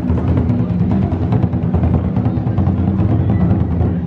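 A group playing large Japanese taiko drums: rapid, continuous beating of deep drum strokes, loud and steady.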